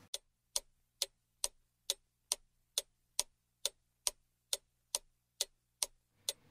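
Clock ticking sound effect: evenly spaced, sharp ticks a little over two per second over silence, marking the passage of baking time.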